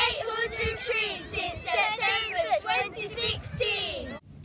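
Several young girls' voices together in unison, in a lively sing-song chant.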